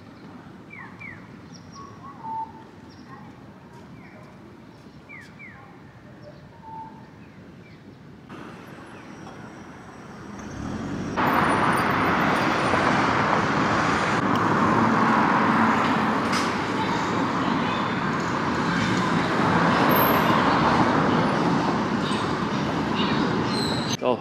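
City street traffic noise: faint at first with a few short chirps, then much louder and steady from about eleven seconds in, as passing road traffic.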